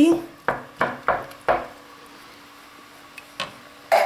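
Wooden spatula stirring soup in a stainless steel pot, knocking and scraping against the pot about four times in the first second and a half, then a pause and one more knock near the end.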